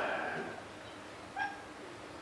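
A man's drawn-out "uh" trailing off in the first half second. After that it is quiet, with one short, faint pitched sound about a second and a half in.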